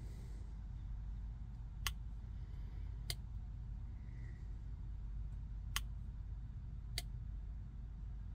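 Four sharp clicks, in two pairs a little over a second apart, over a low steady hum, from a 2020–2021 Ford Super Duty 6.7L Powerstroke while an SCT X4 programmer flashes a custom tune into it. This clicking is normal during the tune-loading process.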